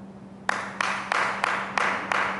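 One person clapping their hands in a steady rhythm, about five claps at roughly three a second, starting about half a second in, over a faint steady hum.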